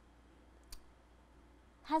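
A pause in speech: quiet room tone with a single short click about a third of the way in, then a woman's voice resumes at the very end.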